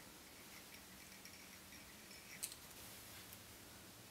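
Near silence: room tone, with one faint, brief click a little past halfway through from a small fly-tying tool being handled at the vise.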